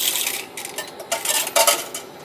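Coins dropped into a Dublin Bus driver's coin fare tray, clinking in two short clatters: one at the start and another about a second in.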